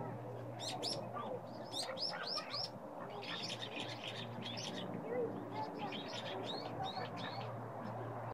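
Small birds chirping: short, high calls in quick runs throughout, over a steady low hum.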